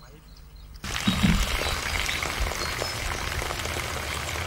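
Water gushing steadily from an open pipe outlet into a concrete channel, a continuous rushing noise that starts about a second in.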